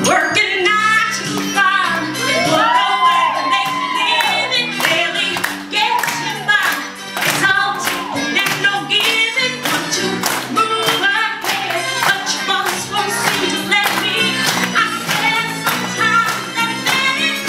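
A woman singing solo into a microphone over a backing track with a steady beat, her voice sliding through long melodic runs.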